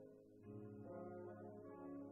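Concert wind band playing soft, sustained chords, with saxophones among the instruments; a new chord comes in about half a second in.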